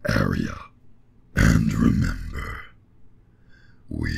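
A voice making two wordless, grunt-like sounds: a short one at the start and a longer one a little over a second in.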